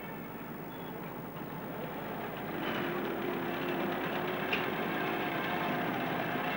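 Street traffic: car engines running, growing louder about two and a half seconds in.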